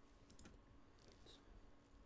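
Near silence with a few faint clicks from trading cards being handled.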